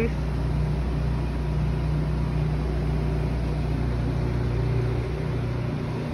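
Steady low drone of a nearby truck engine idling, over faint street noise.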